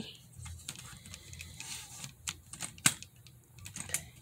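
Scattered clicks and knocks of a phone being handled and repositioned in its mount, close to the phone's microphone, with the sharpest knock a little before three seconds in.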